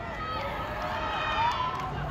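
Several voices shouting and calling out at once across an open sports field, from players and sideline teammates, loudest about one and a half seconds in.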